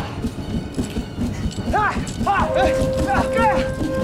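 Short, rising-and-falling shouts from fighters in a staged hand-to-hand scuffle, several in quick succession, with a steady held tone starting about halfway through.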